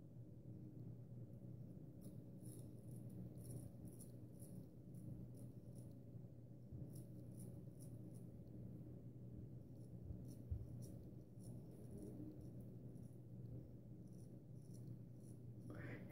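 Faint, crisp scraping of a Gold Dollar 66 carbon-steel straight razor cutting stubble on the upper lip, in clusters of short strokes over a low steady hum.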